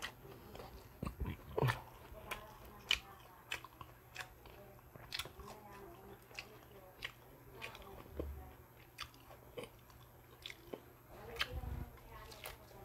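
Close-miked chewing of crispy fried okoy (shrimp and carrot fritters), sharp crunches coming about every half second. A louder bite into a fresh piece near the end.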